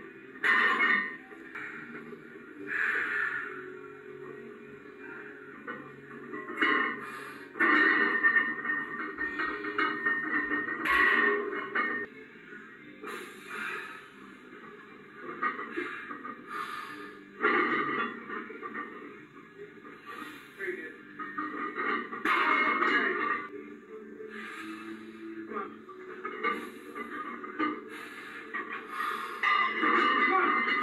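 Thin, muffled sound played back through a television speaker: music with indistinct voices, swelling in stretches of a second or two.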